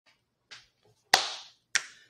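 Three sharp hand claps: a faint one half a second in, then two loud ones about a second and near two seconds in, each dying away quickly.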